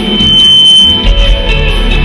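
Live soul band music with singing, electric guitar and drums. A single steady high-pitched tone rings over it from just after the start for about a second and a half.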